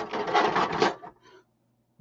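Plastic action figures clattering and rubbing against a toy wrestling ring's mat as they are pressed down into a pin. The noise stops abruptly about a second in.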